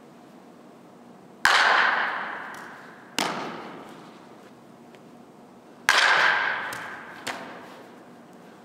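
Two loud, sharp smacks of a softball striking home, each ringing on in a large echoing indoor hall and each followed about a second and a half later by a lighter smack.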